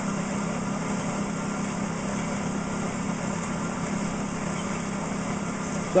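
Exercise bike pedalled fast to spin a car alternator: a steady whir from the flywheel, belt and alternator, which is generating current to charge a battery bank.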